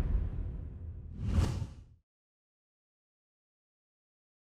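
Whoosh sound effects of an animated logo intro: one sweep dying away, then a second, shorter whoosh about a second and a half in, cutting off suddenly about two seconds in.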